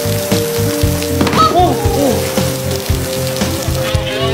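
Steady rain falling on wet pavement, over soft background music with long held notes.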